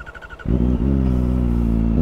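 Kawasaki ZX-4RR's 399 cc inline-four engine is cranked by its starter with a quick ticking, catches about half a second in, and settles into a steady idle.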